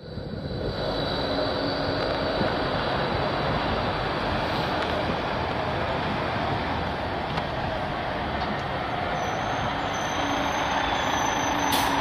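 Street traffic with a tram moving off along its tracks. The diesel engine of a heavy Yarra Trams Network Response Unit truck comes closer and grows louder near the end as it pulls up alongside.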